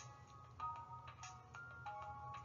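Quiet background music: soft held notes that step to a new pitch every half second or so, over a low steady hum.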